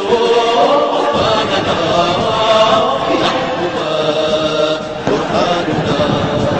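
A chorus of voices chanting a sung Arabic anthem, holding long notes that slide between pitches.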